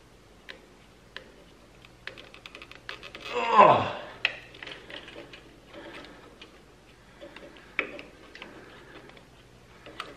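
Light scattered clicks and ticks of pliers working at corroded wire terminals on a winch controller, over a faint steady hum. About three and a half seconds in comes a man's short groan, falling in pitch.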